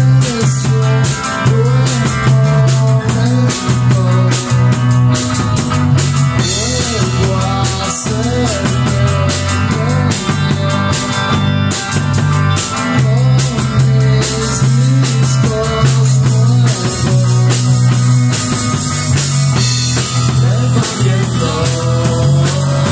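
Live rock band playing an instrumental passage: two electric guitars, bass guitar and drum kit, with a guitar line of bending notes over a steady bass and busy drums and cymbals.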